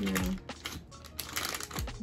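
A plastic-sealed microneedling stamp and its packaging being handled: a run of light clicks and taps, over background music.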